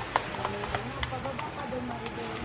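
Background voices of people talking, not close enough to make out, with sharp irregular clicks or taps about two to three times a second.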